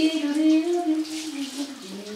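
A single held musical note with a slight waver in pitch, fading out near the end.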